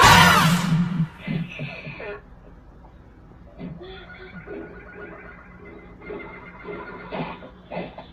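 A loud, wavering shriek of a costumed villain character, dying away about a second in. Quieter scattered fight-scene sounds follow over a steady low hum, heard through a TV speaker.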